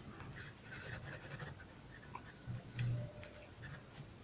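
Pen scratching on notebook paper as a word is written out by hand, faint, with a brief low hum about three seconds in.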